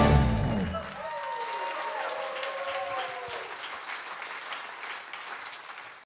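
A live band's final chord ringing out and dying away in the first second, then audience applause with some cheering, fading out toward the end.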